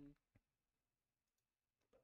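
Near silence: room tone with a couple of faint, short clicks.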